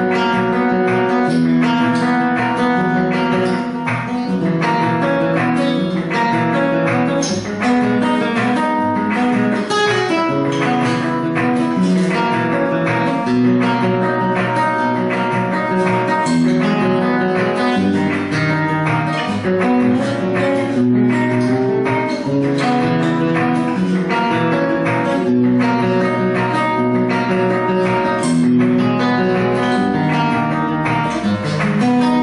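Flamenco guitar playing a rumba with a steady, rhythmic stream of picked and strummed notes.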